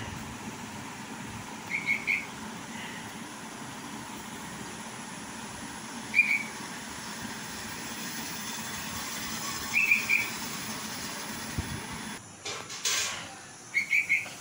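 Steady hiss of heavy rain, with short high chirps of a red-vented bulbul every few seconds, about two, six and ten seconds in and again at the end.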